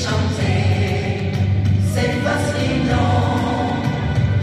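A national anthem: many voices singing together over a sustained musical accompaniment, a new phrase starting about halfway through.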